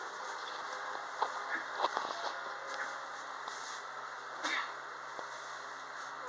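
ThyssenKrupp hydraulic elevator car travelling down, heard from inside the car: a steady hiss with a faint hum, a few light clicks, and a louder knock about four and a half seconds in.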